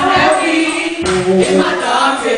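Live gospel music: several singers singing together over a band.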